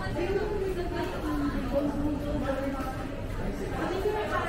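People talking and chattering as they walk past, over a low background hum of a busy walkway.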